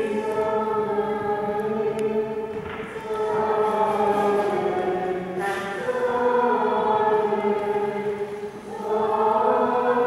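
A choir singing in long, slow, held phrases, with brief pauses for breath about three seconds in and near the end, in a reverberant church.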